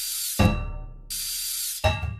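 Marching band music built around hissing, steam-like sound effects: two short hissing bursts that start and stop abruptly, with a low hit and ringing tones between them, then the drums and band come back in near the end.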